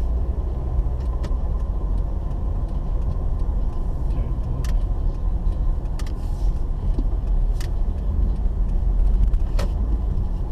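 Steady low rumble of a car's engine and tyres heard from inside the cabin while driving slowly, with a few short clicks scattered through it.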